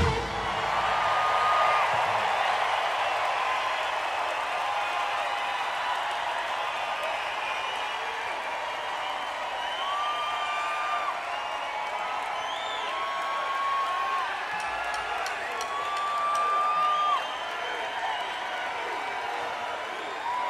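Large concert audience cheering and applauding right after a song ends, with long, high, held cheers standing out above the clapping. The band's playing cuts off at the very start.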